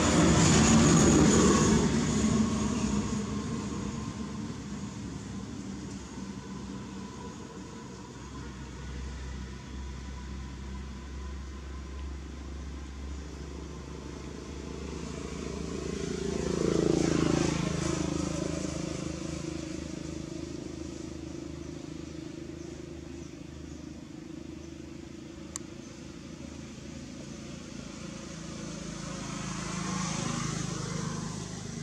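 Engine noise of motor vehicles going past: one fades away at the start, and a second swells and drops in pitch as it passes a little after halfway, over a steady low engine hum.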